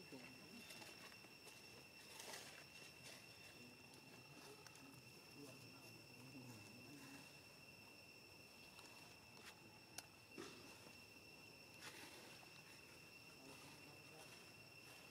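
Near silence in forest: a faint, steady insect drone held at two high pitches, with a few faint clicks.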